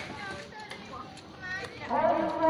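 Faint background chatter of several voices with a few light clicks, like utensils or snack wrappers handled at a table. A held, pitched musical tone comes back in near the end.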